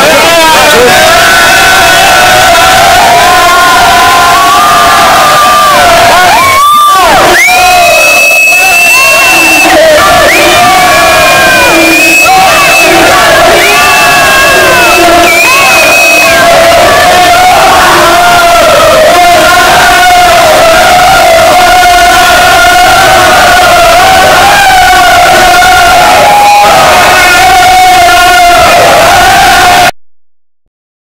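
A group of futsal players chanting and shouting together in a championship celebration, very loud, with several long high cries over the chant.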